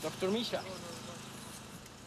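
Faint voices of people calling out in the background, then a low, faint steady buzz.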